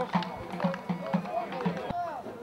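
A large double-headed drum beaten in a steady rhythm, about four beats a second, with men's voices shouting over it. The sound cuts in suddenly at the start.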